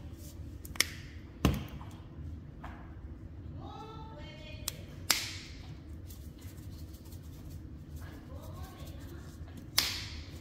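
Plastic spice shaker jars being handled: four sharp clicks and knocks, the loudest and deepest about a second and a half in, as caps and jars knock against the granite counter. A faint voice and a low steady hum sit behind.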